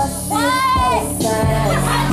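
Hip hop song playing: a sung vocal note that rises and then holds, over a beat with a low bass line.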